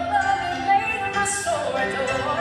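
Women's vocal group singing a gospel song into handheld microphones, amplified through a PA, with long held notes that slide in pitch.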